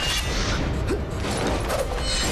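Sword-fight sound effects: blade swishes and whirling robes, with a swish near the start, over dramatic background music.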